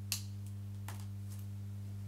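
A quiet room filled by a steady low electrical hum, with one sharp click just after the start and a fainter click about a second in.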